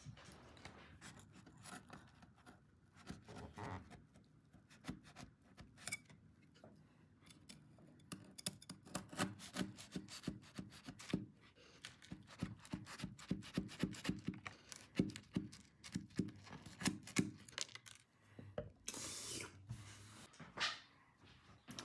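Serrated knife sawing through crunchy cookies, with faint repeated scrapes and crackles as the blade works back and forth and rubs the cardboard box. The scraping comes in a quick run through the middle of the stretch, and a short rustle follows near the end.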